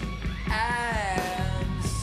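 Rock band playing live: a male lead vocal sings over electric guitar, bass and drums, the sung line bending down in pitch about halfway through.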